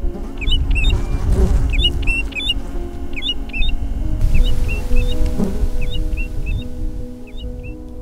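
American golden-plover calling: short, sharp whistled notes in quick clusters of two or three, repeated many times, with soft ambient music and a low rumble underneath.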